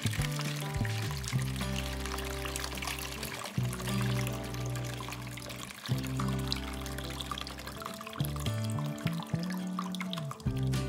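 Rinse water pouring and splashing out of a tipped-over car battery's cell openings into a plastic bowl, over background music.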